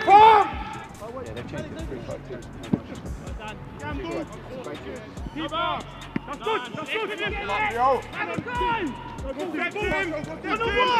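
Footballers shouting to one another across the pitch, loudest right at the start and again in the second half, with short sharp thuds of the ball being kicked, one stronger about three seconds in.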